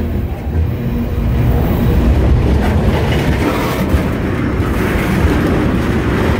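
Railcars of a passing train rolling by close at hand, a steady low rumble of wheels on track.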